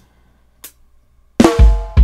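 Addictive Drums 2 virtual drum kit on a reggae preset starting a groove about one and a half seconds in, after near silence: a deep kick drum with snare hits.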